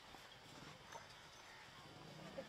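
Near silence: faint outdoor room tone with a couple of soft clicks about a second apart.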